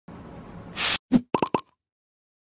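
A short loud hiss from an aerosol can spraying, cut off abruptly about a second in. Then a thump and three quick popping sounds from a logo-sting sound effect.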